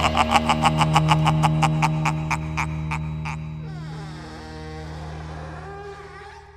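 Instrumental ending of a country-rock band recording: rapid repeated notes, about five a second, over a held low chord, stopping about three seconds in. The music then fades on a short sliding figure and a held note.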